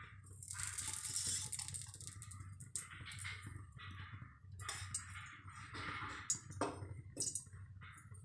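Metal spoon scraping and clinking around the inside of an aluminium kadhai as a little oil is spread over it, with a few sharp clinks in the second half.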